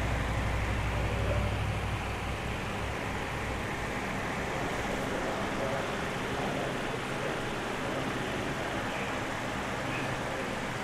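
Steady background room noise with faint, indistinct voices. A low rumble fades out about two seconds in.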